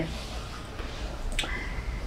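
A quiet pause with faint room noise and a single sharp click about one and a half seconds in.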